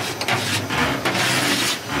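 Cheap fireplace ash vacuum running, its nozzle sucking dust off the inside floor of a smoker: a steady rushing hiss.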